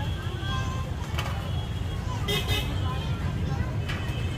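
Street background noise: a steady low rumble of traffic under indistinct voices. A short, brighter sound cuts through about two and a half seconds in.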